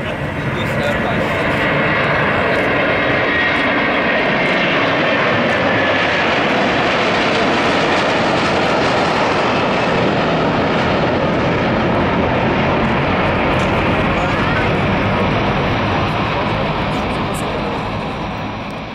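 Airbus A330-243's two Rolls-Royce Trent 700 turbofans at takeoff thrust as the jet climbs out: a loud, steady jet roar that builds over the first two seconds and eases slightly near the end.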